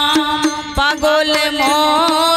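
Bengali devotional song sung by a woman into a microphone, accompanied by a harmonium. Her voice bends in pitch over the harmonium's steady reedy tones, and sharp percussion strikes fall several times through the phrase.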